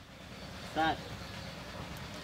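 Low, steady outdoor background rumble, with one short vocal sound from a man, a brief grunt or syllable, about a second in.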